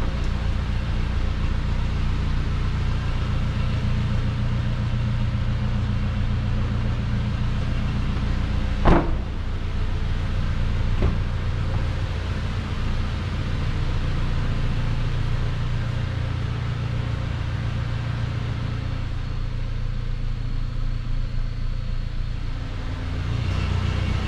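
Idling engine of a Toyota Land Cruiser Prado 150: its 2.7-litre four-cylinder petrol engine giving a steady low rumble. A single sharp knock comes about nine seconds in and a fainter one about two seconds later.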